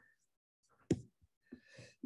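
A person's audible sigh, with a short sharp sound about a second in and a longer breathy exhale near the end.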